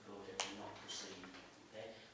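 Quiet speech in a small meeting room, with one sharp click about half a second in.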